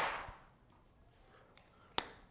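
Paper rustle from a flip-chart sheet being turned over, fading out within half a second. Then near silence, and a single sharp click near the end.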